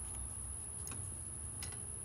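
Quiet background: a low steady rumble and a thin, steady high-pitched whine, with two faint ticks, about a second in and again near the end.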